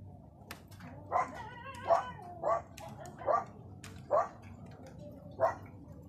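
A dog barking six times, roughly a bark a second, with sharp ticks in between.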